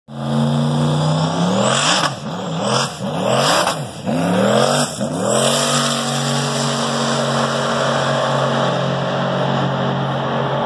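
A drag-racing car launching and accelerating hard down the strip. Its engine revs climb and drop back sharply at several gear shifts in the first five seconds, then settle into a steady engine note.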